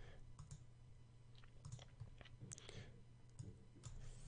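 Near silence with a few faint, scattered clicks of a computer mouse.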